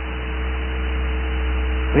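Steady electrical mains hum with an even hiss behind it, faint steady higher tones riding on the hum.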